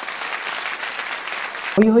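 Applause: a steady patter of hand-clapping that cuts off abruptly just before the end, when a voice comes back in.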